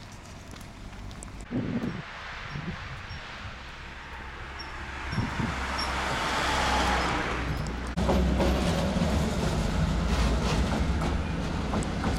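Road traffic: a truck drives past, its noise swelling to the loudest point about seven seconds in. In the last few seconds a steady low rumble of traffic and a tram follows.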